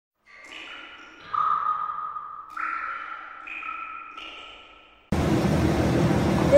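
Short intro music of held, ringing electronic notes at several pitches, a new note entering about every second or so and the sound fading out. About five seconds in it cuts abruptly to a steady background rush.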